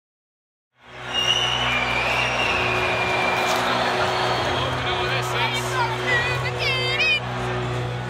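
Live electronic dance music over a big PA, recorded on a phone: held synth and bass notes with no clear beat, under the dense noise of a large crowd. The sound fades in about a second in, and near the end people close by shout and whoop.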